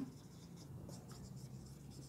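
Marker pen writing on a whiteboard: faint, short scratching strokes of the felt tip across the board as letters are formed.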